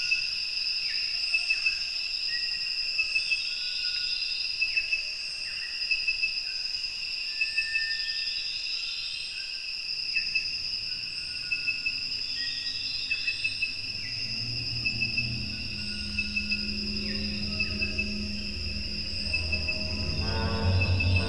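A steady chorus of chirping insects with a fast pulsing trill, and shorter calls repeating about every second and a half. Low, dark music notes come in underneath from about halfway and swell near the end.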